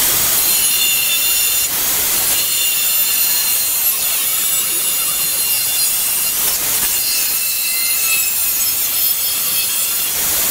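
Angle grinder running steadily with its disc biting into the steel wall of an old gas bottle, a high whine over a harsh hiss. It starts abruptly at the very beginning and keeps on without a break.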